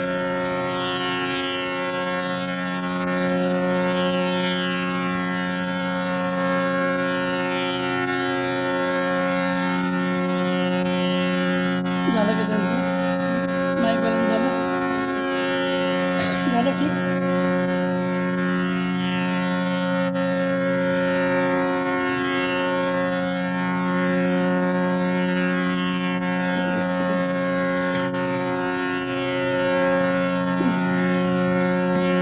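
Tanpura drone: its strings plucked in a repeating cycle, each pluck adding a buzzing shimmer over the steady held tones. Around the middle a voice briefly sounds softly over the drone.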